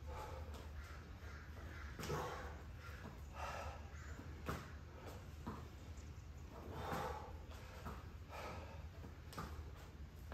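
A person breathing hard from exertion, a faint breath every second or two, with a few small clicks and a steady low hum underneath.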